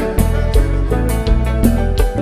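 Live kompa band playing: electric guitar lines over bass and drums, with a steady beat.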